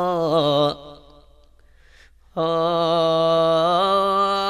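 A man's voice holding long, drawn-out notes rich in overtones. The note wavers and bends, breaks off under a second in, and after about a second and a half of near quiet comes back as a steady held note.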